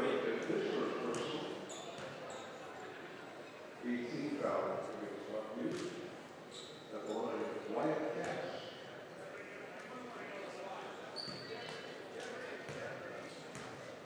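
Spectators chattering in an echoing gymnasium, with a few sharp knocks of a basketball bouncing on the hardwood floor.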